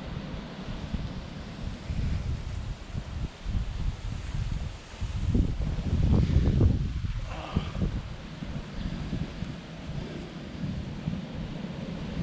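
Wind buffeting the camera microphone in uneven gusts, a low rumble that is loudest about halfway through.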